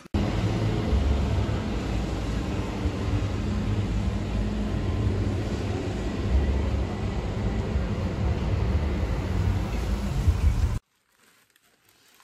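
Outdoor urban background noise: a steady low rumble that cuts off suddenly near the end.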